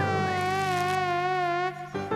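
A steady buzzing drone with a slightly wavering higher tone on top, held for about a second and a half and then cutting off abruptly.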